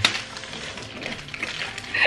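Small packaged items being handled and pulled out of a cloth Christmas stocking: one sharp click at the start, then faint rustling.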